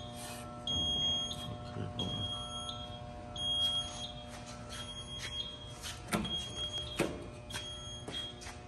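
Alarm beeper of a PDI WaveStar power distribution unit's control panel beeping repeatedly after power-up, a high beep about every 1.3 seconds, over a steady low electrical hum. A few sharp knocks near the end.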